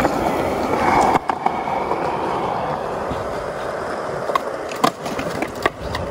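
Skateboard wheels rolling across the ground, loudest about a second in, then steady, with a few sharp knocks along the way.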